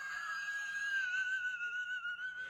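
A person's long, high-pitched squeal held on one slightly wavering note.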